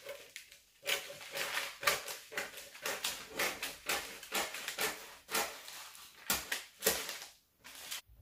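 Scissors cutting through brown pattern paper: a run of irregular snips and paper crunches, starting about a second in and stopping shortly before the end.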